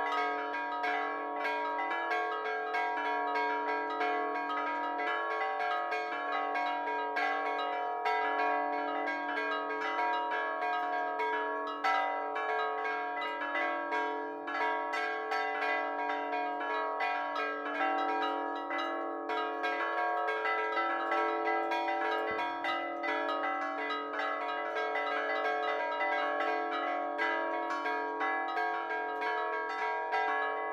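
Four church bells, tuned to B, A-flat, E and D, ringing a Maltese solemn peal (mota solenni). Rapid, overlapping strikes keep the bells sounding continuously, their tones hanging and blending.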